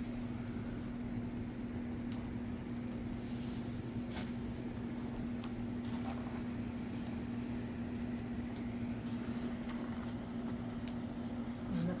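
Steady motor hum of a running electric box fan over a low noise bed, with a few faint crackles from the wood fire under meat grilling on the grate.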